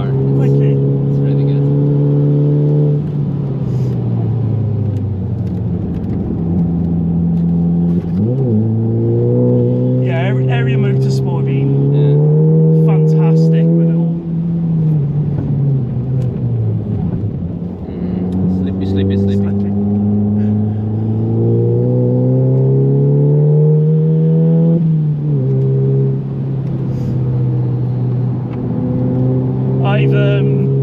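Mk7 VW Golf GTI's turbocharged 2.0-litre four-cylinder heard from inside the cabin under hard driving. The engine note climbs steadily in pitch as the car pulls through the gears, dropping back at each shift or lift, several times over, with one quick blip about eight seconds in.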